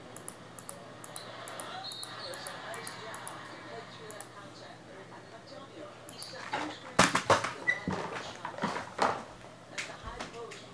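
Faint handling noise for several seconds, then from about seven seconds in a run of sharp crinkles and clicks as a trading-card box and its packaging are handled and opened.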